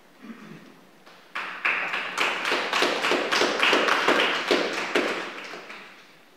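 Small audience applauding: dense, scattered hand claps start about a second in and die away near the end.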